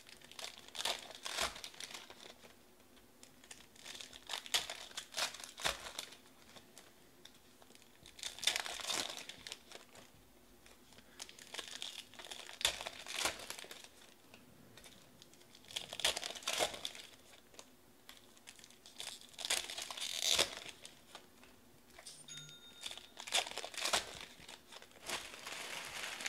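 Foil trading-card pack wrappers being torn open and crinkled by hand, with cards handled, in bursts every three to four seconds.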